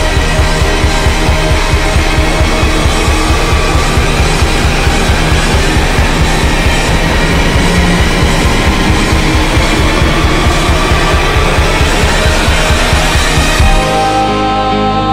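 Loud alternative rock music from a full band, with no singing: a dense wall of sound over a steady, fast-pulsing bass line. The pulsing stops right at the end, leaving a chord ringing.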